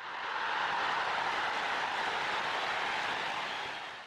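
Outro sound effect: a steady rushing noise that fades in over about half a second, holds evenly, and fades away near the end.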